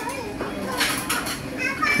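Indistinct background voices, children's among them, with a short hiss about a second in.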